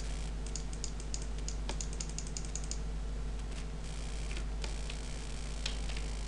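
A rapid run of about a dozen light clicks at a computer, some five a second, then a few scattered clicks, over a steady low hum.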